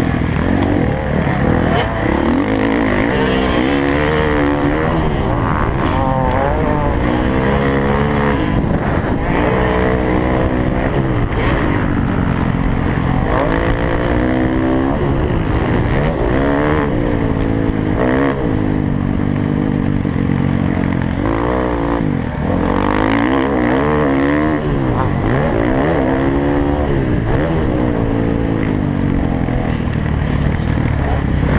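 Motocross dirt bike engine heard on board, its pitch rising and falling over and over as the rider accelerates up through the gears and backs off for turns, with wind and track noise behind it.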